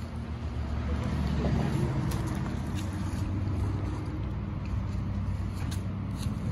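A low, steady engine drone, with a few faint clicks over it.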